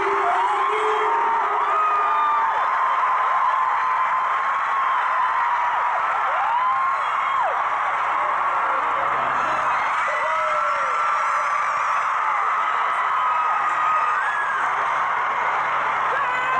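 A large stadium crowd of fans screaming and cheering without a break, with many high voices rising and falling in pitch over a dense wall of noise.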